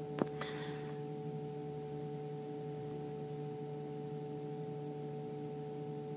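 A steady electrical hum with several overtones, the recording's background hum, with one faint click just after the start.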